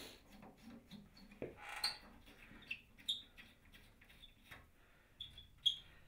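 Rust-seized screw being turned out of an old steel hinge in a wooden window frame with a Phillips screwdriver: faint scraping and clicking with several short high squeaks as it turns, and a sharper click near the end.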